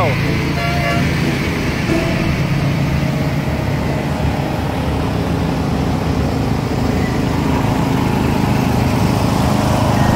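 Decorated golf carts and small parade vehicles driving slowly past, their small engines giving a steady low hum.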